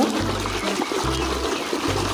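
Water splashing and sloshing in a tub as a hand scrubs a toy in it, over background music with a steady bass beat.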